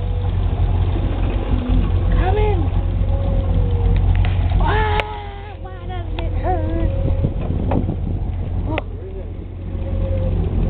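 Boat motor running steadily with a low rumble while voices call out over it. A sharp click comes about five seconds in, and the rumble eases for a moment after it.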